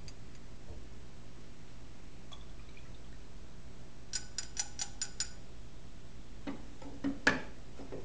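Glass test tubes ticking together during a pour, a quick run of about six light clinks, followed by two knocks as an emptied glass test tube is set into a wooden test-tube rack.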